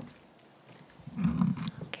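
Knocks and bumps picked up by a podium microphone as a new speaker steps up to it: a single click at the start, then a louder cluster of low thuds and clicks in the second half.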